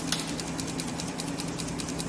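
A single key click near the start over a steady low electrical hum and a rapid, even high ticking of about ten ticks a second.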